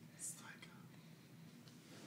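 A brief faint whisper near the start, otherwise near silence: room tone.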